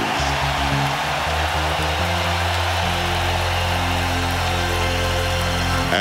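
A large arena crowd cheering, a steady roar, over music with sustained low bass notes that change pitch every second or so.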